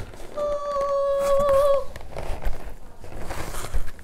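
A person humming one steady, high note for about a second and a half, with faint rustling as a box is handled.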